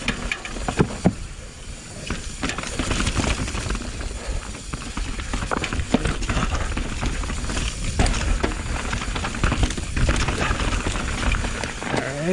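Mountain bike riding down a rough, rooty dirt trail, heard from a camera on the bike: steady tyre and trail noise with frequent knocks and rattles from the bike, over a low rumble of wind on the microphone.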